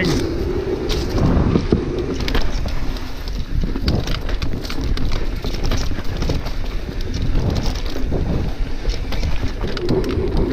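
Mountain bike ride at speed over a wooden boardwalk and dirt singletrack: wind buffeting the microphone and tyre rumble, with frequent clicks and rattles from the bike over bumps.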